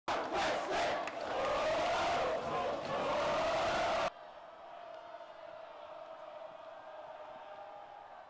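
A high-school football student section yelling and cheering loudly. It cuts off abruptly about four seconds in, leaving a much quieter stadium background.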